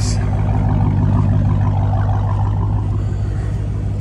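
Car engine idling steadily, a low even hum.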